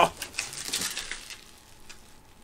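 Light clicks and rustling of cardboard packaging being handled in a shipping box, dying down near the end.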